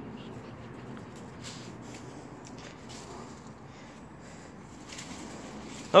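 Faint rustling and scattered light ticks of a pug puppy moving about in a bed of ivy leaves.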